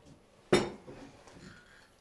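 A single clink of kitchenware about half a second in, fading quickly, followed by faint handling sounds.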